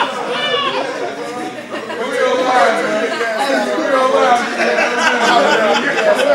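Several men's voices talking over one another in a large room, an unbroken babble of chatter.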